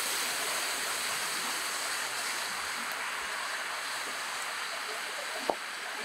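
Heavy rain falling steadily, with one sharp click about five and a half seconds in.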